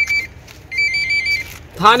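A high electronic beeping tone, a quick run of short, steady-pitched beeps lasting under a second, of the kind a phone's ringtone or notification makes.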